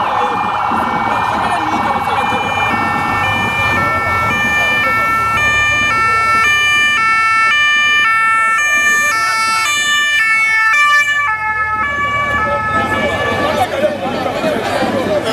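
Motorcade escort siren approaching and passing. It begins as a fast warble, then switches to a two-tone hi-lo pattern, changing pitch about twice a second. The siren is loudest in the middle and fades near the end, over street crowd noise.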